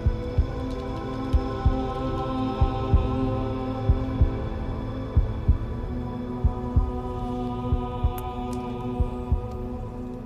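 Tense dramatic underscore: sustained synth chords held under a low heartbeat-like double thump, one pair about every 1.3 seconds.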